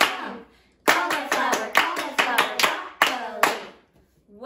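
Several people clapping their hands in time together, about four to five claps a second, keeping the beat for a chanted word pattern. One clap comes at the start, then a short pause, and the steady run of claps stops shortly before the end.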